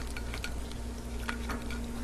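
Faint scattered clicks and small crackles of a raw lobster tail's shell being handled as the meat is set back on top of it, over a steady low hum.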